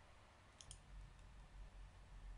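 Near silence with a low steady hum, and two faint, quick clicks a little over half a second in, typical of a computer mouse button.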